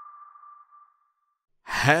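The intro music cuts off, leaving one high note that rings on and fades away within about a second, then a short silence before a voice starts speaking near the end.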